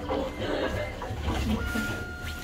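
Photo booth kiosk's printer running as it prints the photo strips: a low mechanical hum, with a steady high tone coming in near the end.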